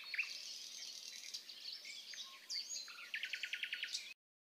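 Faint birds chirping: scattered short, downward-sliding chirps and a whistle, then a fast, even trill in the last second.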